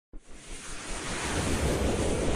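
Rushing whoosh sound effect on an animated intro, a wide noise that swells steadily louder from silence.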